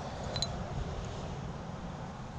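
Quiet outdoor background: a steady low rumble with one faint click about half a second in.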